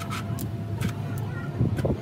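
Steady low hum of an engine running nearby, with scattered light clicks and a louder rough thump near the end.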